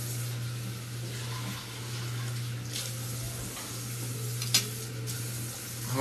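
Steady hiss with a low steady hum underneath, and a sharp click about four and a half seconds in.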